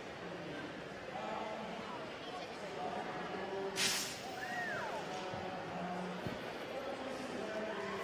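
Crowd murmuring. About four seconds in comes one short, sharp hiss as the CO2 cartridges of two F1 in Schools model cars are pierced at the start and the cars shoot down the track. Just after, a voice in the crowd briefly calls out, rising and falling.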